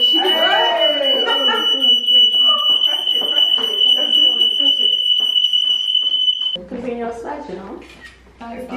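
Smoke alarm sounding one continuous high-pitched tone that cuts off suddenly about six and a half seconds in, set off by the lit birthday-cake candles. Excited women's voices sound underneath it.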